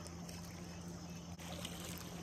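Faint lakeshore background of small water lapping, under a low steady hum, with a few small clicks.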